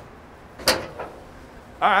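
The hood of a classic car being released and raised: one sharp metallic clunk of the latch letting go about two-thirds of a second in, followed by a lighter click.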